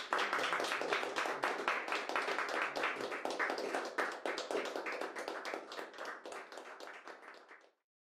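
Audience applause after a solo piano performance, many hands clapping fast and dense, slowly dying down and then cut off suddenly near the end.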